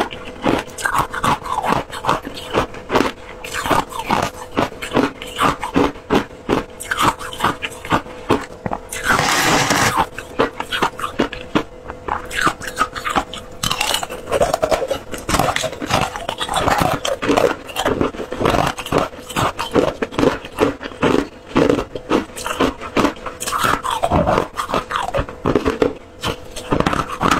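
Crushed flavoured ice crunched and chewed in the mouth, close to clip-on microphones: a rapid, continuous run of crunches. About nine seconds in comes a second-long rush of noise.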